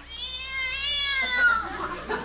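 A cat's sound effect in an old radio drama: one long yowl, held and then falling away in pitch after about a second and a half. It is the cat startled and fleeing as it is shooed off a car.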